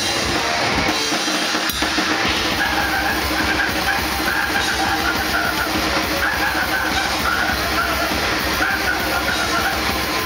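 Live grindcore band playing at full volume: a drum kit hammered fast with a pounding bass drum under a dense, distorted wall of sound. A high wavering note joins in over it a couple of seconds in.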